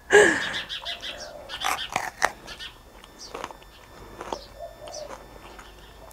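A brief laugh at the start, then crunching as a raw sweet pepper is bitten into and chewed close to a clip-on microphone. The crunches come in a cluster about two seconds in, with a few fainter ones later.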